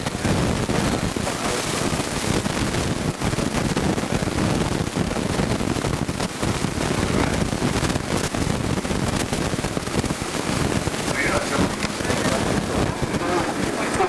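Indistinct chatter of voices over a dense, steady background noise, with one voice standing out briefly near the end.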